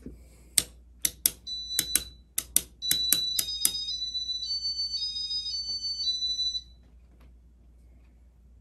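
A run of sharp clicks, then a high electronic tone that steps between several pitches for a few seconds and cuts off suddenly.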